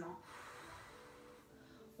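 A woman's long exhale through the mouth, the Pilates breath out on the effort of drawing the knee to the chest, fading away over about two seconds.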